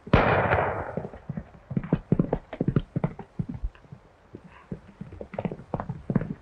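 A single handgun shot right at the start, dying away over about a second, followed by the rapid hoofbeats of a galloping horse.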